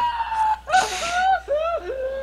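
Helpless, wheezing laughter: high squealing sounds that arch up and down in pitch, broken by short gasps.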